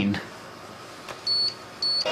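Two short, high electronic beeps from a speech-generating communication computer, the first a little over a second in and the second near the end, about half a second apart.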